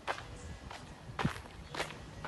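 Footsteps of a person walking on a concrete path, four steps about half a second apart.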